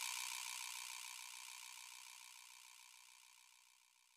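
Faint recording hiss with a faint steady tone, left after the music stops, fading to near silence about a second in.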